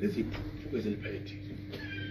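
A person's voice making a few short sounds with gliding pitch, over a steady electrical hum.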